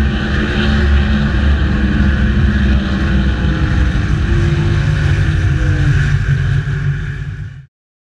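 A race car engine running loud at high, fairly steady speed, cutting off abruptly near the end.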